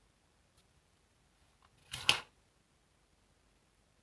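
A USB plug being pulled out of a power bank's USB socket: one short scraping click about two seconds in, with near silence around it.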